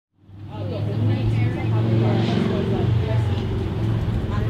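Street sound: a vehicle engine running with a steady low hum, with people talking in the background. It fades in at the very start.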